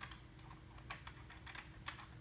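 A few faint, scattered metal clicks as the center spacer and a bolt are handled and fitted into the ski's mount on a dirt bike's front fork, the clearest about a second in and again near the end.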